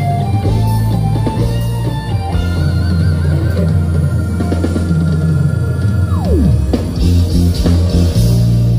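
Live band music over a loud PA, instrumental, with guitar and drums. A high note is held for several seconds and then slides steeply down in pitch about six seconds in.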